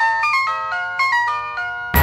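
A mobile phone ringtone playing a quick melody of bright electronic notes, cut off near the end by loud background music with drum hits.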